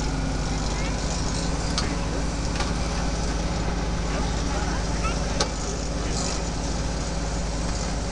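Farm tractor engine running steadily as it tows a hay wagon, with a couple of sharp knocks, about two seconds and five and a half seconds in.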